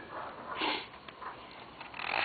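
A man's short, quiet breath in close to a handheld microphone, about half a second in, followed by faint room noise.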